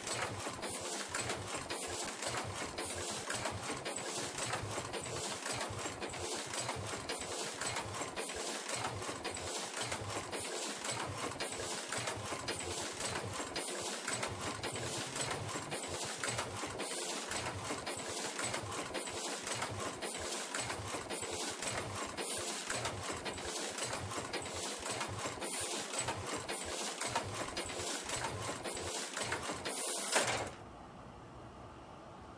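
Rapid, steady mechanical clatter of many strikes a second, like a small machine running, that cuts off abruptly at the very end.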